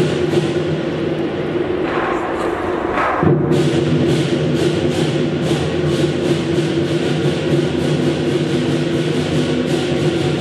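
Lion dance percussion band playing: a large drum with cymbals clashing about three times a second. About two seconds in, the clashes give way to a brief swelling rush that cuts off sharply, then the beat resumes.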